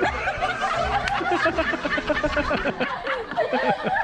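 People laughing in a long run of short, quick bursts.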